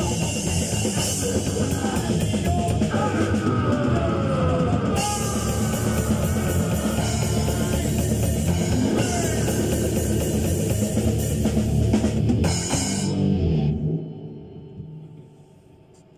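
A rock band of electric guitar, bass guitar and drum kit playing a jam together, loud and dense, stopping about 14 s in and dying away to quiet.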